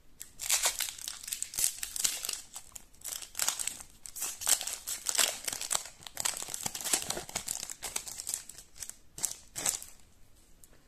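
Foil wrapper of a Topps Bundesliga Chrome trading-card pack crinkling and tearing as it is pulled open by hand: a dense, irregular run of sharp crackles, with two louder ones near the end.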